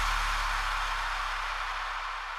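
The tail of the final hit of a Melbourne bounce dance track dying away. A deep sustained bass note and a hissing wash of reverb fade out slowly and steadily.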